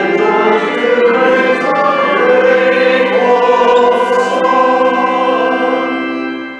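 A hymn sung by several voices together, with held notes that change every second or so.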